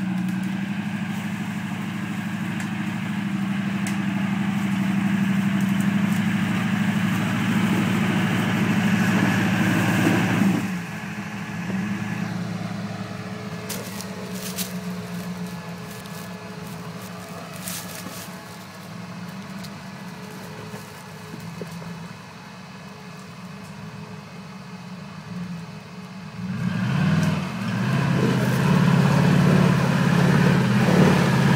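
Modified Jeep Wrangler YJ's engine working hard under load as it climbs a steep muddy gully. It drops abruptly to a quieter run about ten seconds in, with scattered knocks a few seconds later, and rises loud again near the end.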